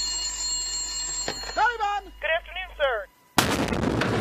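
A steady electronic hum with fixed high tones and a short, thin radio-like voice. About three and a half seconds in, a sudden loud explosion from an air strike on a laser-designated target.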